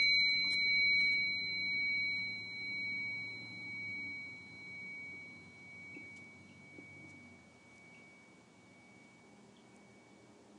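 A struck metal prayer bell rings out as the chanting ends, its tone dying slowly away over about eight seconds with a slow, wavering pulse. Two faint ticks come near the end.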